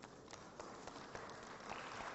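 Faint background noise of a large hall, with a few soft, light ticks scattered through it.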